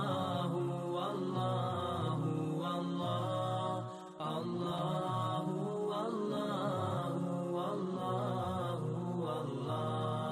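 Chanted vocal music with sustained, layered voices, dipping briefly about four seconds in.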